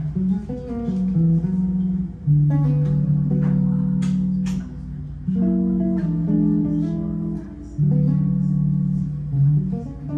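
Fodera Monarch 5 five-string electric bass played solo: chords and held melody notes ringing on, a new chord sounding about every two to three seconds.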